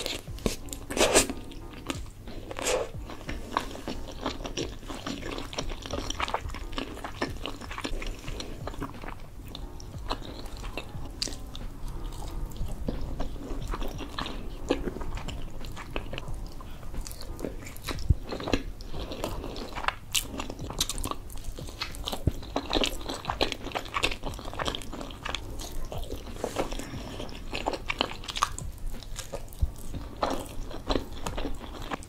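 Close-miked mukbang eating sounds: a person biting and chewing spaghetti and meatballs, with many irregular mouth clicks and smacks.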